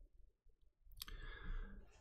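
A quiet pause in a small room, broken about halfway through by one faint sharp click, followed by a faint hiss.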